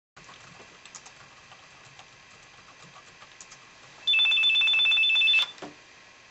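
Mobile phone ringing once, about four seconds in: a loud electronic two-tone trill lasting just over a second. Before it there are only a few faint clicks.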